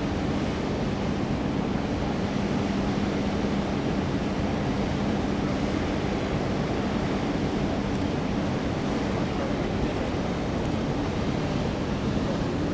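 Steady wind noise on the microphone over a low, steady hum from a cruise ship's machinery; the hum weakens about halfway through.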